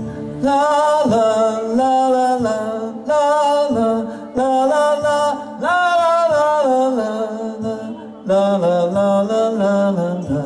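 A man singing a wordless melody on 'la' syllables, unaccompanied, in short phrases of held notes that step up and down in pitch, demonstrating how the tune goes.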